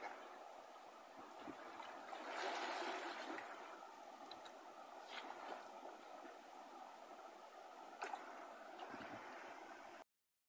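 Steady rush and gurgle of a muddy river's water, with a louder stretch of splashing and sloshing about two to three seconds in as a wader ducks under the surface.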